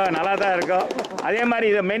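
A man speaking Tamil into a bank of microphones, with a short pause about a second in and a few faint clicks early on.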